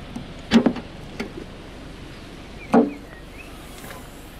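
BMW 1 Series tailgate opened by pressing the BMW roundel, which is the boot release. The latch gives a sharp click about half a second in and a lighter click a little after one second, then there is a louder clunk near three seconds as the tailgate lifts open.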